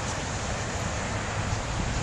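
Steady rushing noise of a flood-swollen creek running with a strong current, mixed with wind rumbling on the microphone.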